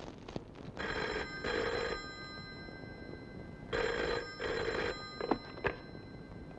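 Landline telephone ringing in the classic double ring, two ring-ring cycles about three seconds apart. A couple of sharp clicks follow near the end.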